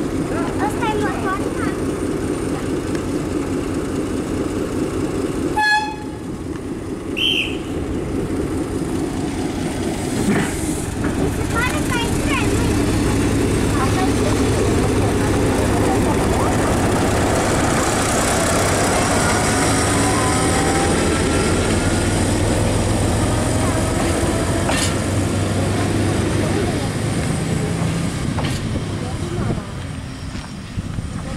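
Diesel railcar pulling out of a halt close by. A brief high pitched signal sounds about six seconds in, then the engine settles into a loud deep drone, with a rising whine as the railcar gathers speed and moves away.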